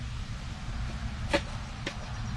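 A knife trimming freshly cured, still green fiberglass cloth on a wooden kayak: two short crisp snaps of the blade through the glass, the louder about a second and a half in and a fainter one just after, over a steady low hum.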